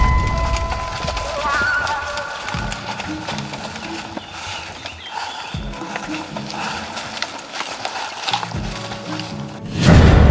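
Background music: held tones fade away in the first second or two, leaving a quieter stretch with scattered sounds, then a sudden loud hit near the end.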